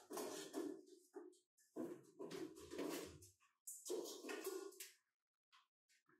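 Four irregular bursts of rustling, scuffing noise in a small echoing space, each up to about a second and a half long, dying away about a second before the end.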